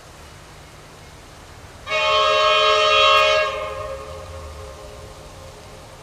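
Diesel locomotive T411's air horn sounding one blast, a chord of several tones, about two seconds in and held for about a second and a half, the warning for a level crossing. The horn then dies away over about two seconds, over the locomotive's low engine rumble.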